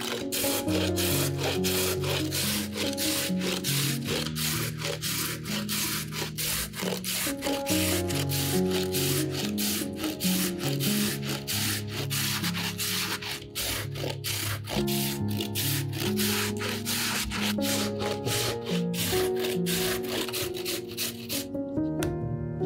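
Raw potato grated on a stainless steel box grater: rapid, even scraping strokes, about three a second, stopping just before the end, over background music.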